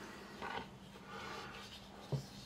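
Faint handling noise as a folding knife with micarta handle scales is picked up off a wooden tabletop and turned in the hands: a brief scrape about half a second in, then a soft rub lasting under a second.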